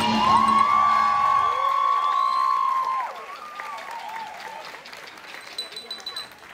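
Audience applauding and cheering with long, high whoops as the dance music ends about a second and a half in. After about three seconds the cheering dies down, leaving lighter scattered clapping.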